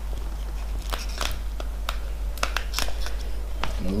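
Clear protective plastic film being peeled off an acrylic camera dome port, crinkling and crackling with scattered sharp ticks.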